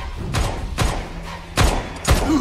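Three heavy impact thuds from a film fight mix, the loudest near the end.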